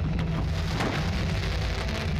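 Dense crackling of fireworks from a burning castillo and rockets: a thick, continuous patter of many small sharp pops, like heavy rain.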